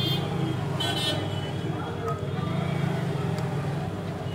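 Background road traffic with a steady low hum and two short, high-pitched horn toots, one at the very start and one about a second in.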